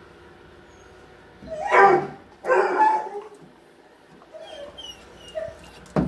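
A dog vocalizing twice in quick succession, each call about half a second long, then a few faint, short high-pitched whines.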